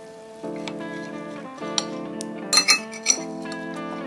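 Metal spoon clinking and scraping against a ceramic plate as it cuts into a slice of cheesecake, with a few sharp clinks in the second half. Steady background guitar music plays throughout.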